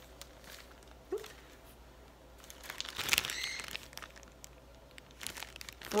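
Paper crinkling and rustling as slips of paper are rummaged through in a bag and one is drawn out, loudest about halfway through and again near the end.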